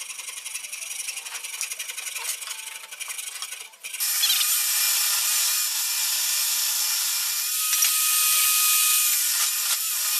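Coping saw cutting into a hardwood strip held in a vise. The sawing is light at first, then much louder and steady from about four seconds in.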